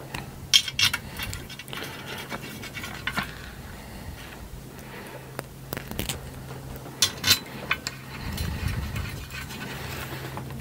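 Small kit screws and metal parts being handled against an aluminium frame plate: scattered clicks and clinks with light rubbing and scraping. The sharpest clicks come about half a second in and as a pair about seven seconds in.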